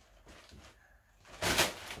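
A thin plastic carrier bag rustling briefly, about a second and a half in, as a rolled-up pair of socks lands in it.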